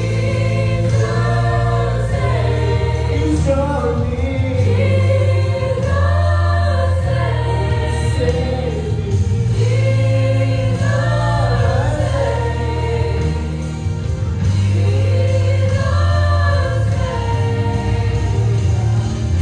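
A mixed gospel vocal quartet, one man and three women, singing into microphones in phrases a few seconds long, over sustained low bass notes that change with the phrases.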